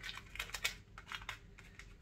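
A run of light, irregular clicks and taps from small items being handled, thinning out towards the end.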